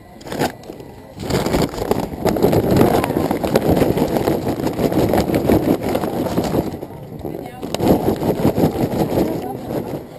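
Kingsford charcoal briquettes poured from their paper bag onto a grill's bed of ashy coals, a dense rattling clatter mixed with paper rustling. The fire is being topped up with fresh fuel. It comes in two pours, with a short break about seven seconds in.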